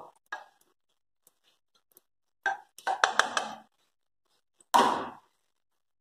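A plastic spoon scraping around the bottom of a pressure cooker as lard melts in it, in two short bursts of quick scraping strokes, the second near the end.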